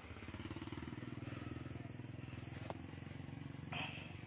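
An engine running steadily at a low, even pitch, with a fine regular pulse. A short higher sound briefly joins it near the end.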